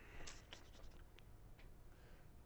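Faint scratching of writing on paper, a few short strokes in the first second, then near-silent room tone.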